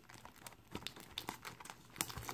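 Plastic shrink wrap on a cardboard card box being worked off by hand, crinkling faintly, with a few sharp crackles about a second in.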